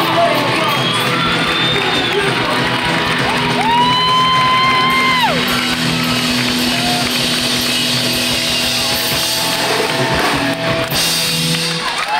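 Live punk rock band playing loud: electric guitars, bass and drums with long held sung vocal notes.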